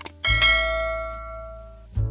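A short mouse click, then a bright bell chime that rings and fades over about a second and a half: the notification-bell sound effect of a subscribe-button animation. A steady low bass from background music runs underneath.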